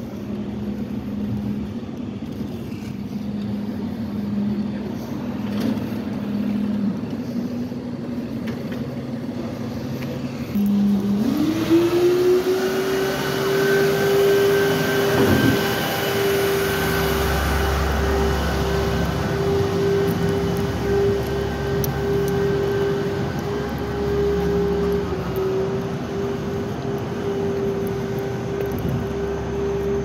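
A 2014 Peterbilt recycling truck with a New Way packer body runs with a steady mechanical whine. About ten seconds in, the pitch rises to roughly double and holds there, louder, as the engine is revved up, typical of the packer's hydraulics being run. A low rumble joins later on.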